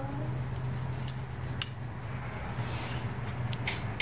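Steady low hum in the background with a few faint, light clicks as the small metal carburetor parts are turned over in gloved hands.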